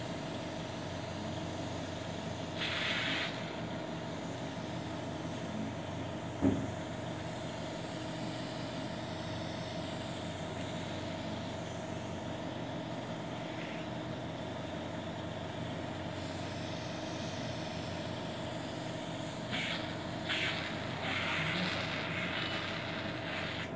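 Steady machine hum with a constant tone, broken by one sharp click about six and a half seconds in and by short bursts of hiss about three seconds in and again near the end.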